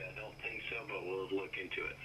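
A voice talking, thin like a radio, over a steady low hum.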